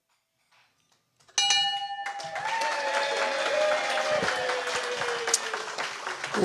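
Audience applauding, starting suddenly after about a second of silence. A steady high tone sounds over the first half second of the clapping, and a fainter tone slides slowly down in pitch beneath it.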